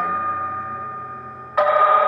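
A spoon striking a glass jar, each strike ringing on in a steady clear tone: the ring of one strike fades away during the first part, and a fresh strike about one and a half seconds in rings out loudly.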